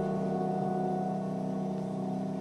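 Grand piano: a chord of several notes held with the sustain, ringing on and slowly fading, with no new notes struck.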